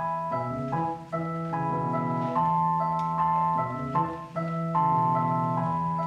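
Casio digital keyboard playing the opening of a song: held chords that change every half second to a second, with no singing yet.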